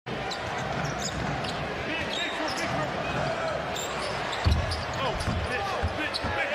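Basketball dribbling on a hardwood court over steady arena crowd noise, with one heavy thump about four and a half seconds in.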